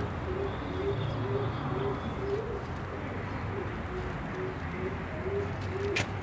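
A dove cooing: a steady run of short, low coos, about two a second, over a low background rumble.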